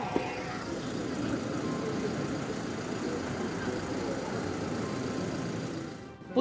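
Steady outdoor street noise of vehicles, with a faint murmur of people's voices and a single sharp knock just after the start.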